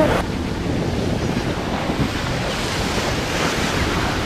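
Sea surf breaking against shoreline rocks and washing over them in white foam: a steady rush of water.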